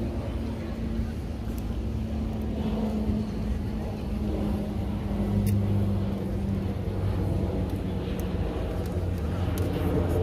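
A steady low rumble with a continuous low hum, the hum swelling slightly about halfway through, and a few faint clicks.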